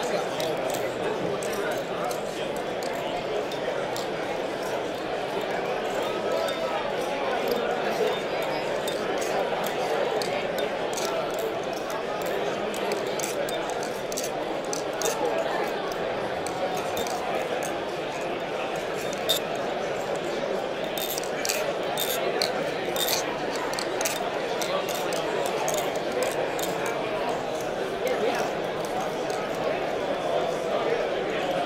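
Steady crowd chatter in a large hall. Over it, flurries of sharp metallic clicks come from a balisong (butterfly knife) being flipped close by, as its handles and latch knock together. The clicks are thickest a little past the middle.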